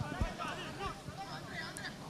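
Faint, distant voices of players calling out on the football pitch, with a soft low thump about a quarter second in.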